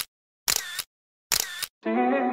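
Camera shutter sound effect, three identical clicks about a second apart with dead silence between them.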